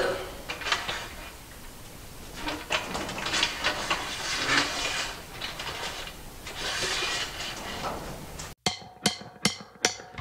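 Aluminium extrusion crossbar being handled and fitted onto an aluminium extrusion frame: scattered metal scrapes, clicks and light knocks. Near the end it cuts abruptly to a much quieter stretch with a few sharp clicks.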